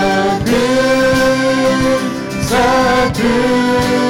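Worship band singing a hymn in Romanian in several voices, with acoustic guitar and violin; long held notes that change about half a second in and again after two and a half seconds.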